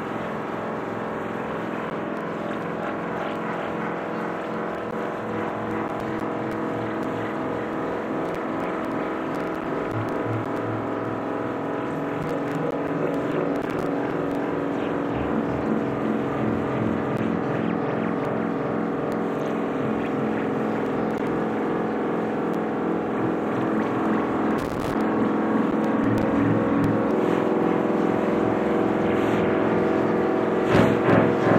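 Experimental electronic synthesizer drone: a dense cluster of sustained tones over a low, fluttering rumble, slowly growing louder.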